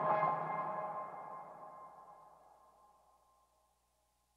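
Background music ending on a held chord of several steady tones that fades away evenly, dying out about three and a half seconds in.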